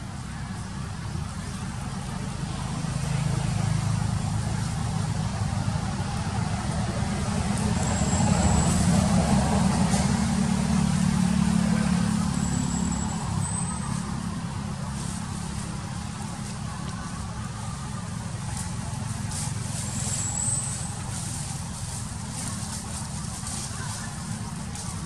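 A motor vehicle's engine rumbling, swelling to its loudest around the middle and then fading back down.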